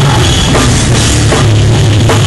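Hardcore band playing live: distorted guitars and bass over drums and cymbals in a loud, dense, steady wall of sound.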